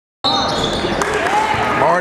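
Basketball game noise in a gymnasium. Voices shout from the crowd and the court while the ball bounces on the hardwood floor. The sound starts abruptly a quarter second in.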